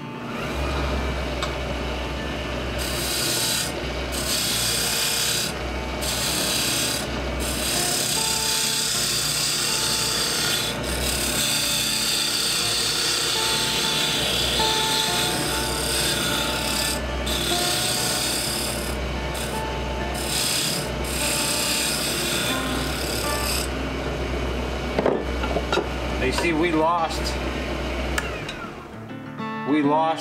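Small wood lathe spinning a hardwood duck call blank while a hand-held turning tool cuts it, a steady scraping over the motor's low hum, broken by short pauses as the tool comes off the wood. The barrel is being shaved down to make the call smaller. The cutting stops shortly before the end.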